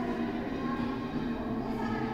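Several voices chanting together in a steady, droning unison, echoing in a church.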